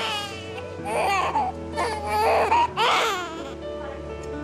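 Newborn baby crying, repeated cries roughly a second apart, over background music with long held notes.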